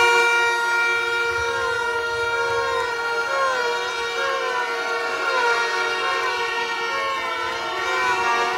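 Several horns held at steady, different pitches sounding together, with a warbling, siren-like tone that dips and rises about once a second over them.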